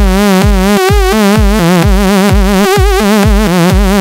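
Harmor synthesizer bassline with heavy vibrato, its pitch wobbling up and down. The wobble rate changes as the vibrato speed knob is turned. The bass notes repeat about three a second.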